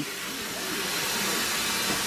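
Bathroom sink tap running, water splashing steadily into the basin.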